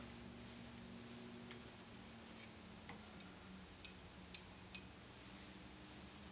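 Near silence: quiet room tone with a faint steady low hum and a handful of faint small clicks in the second half.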